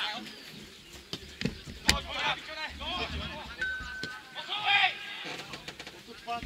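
Players' shouted calls carrying across an open football pitch, loudest near the end. A single sharp knock comes about two seconds in.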